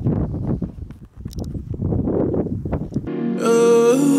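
Wind buffeting the camera microphone in gusts, then cut off abruptly about three seconds in by music with a held, hummed note.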